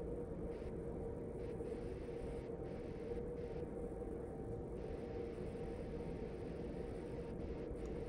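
Quiet, steady room noise with a faint constant hum, and no distinct sounds on top of it.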